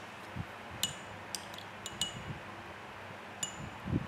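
A paintbrush clinking against a ceramic watercolour palette: about five light, sharp clinks spread through the few seconds, each ringing briefly, with a few soft knocks from handling the paper and brush.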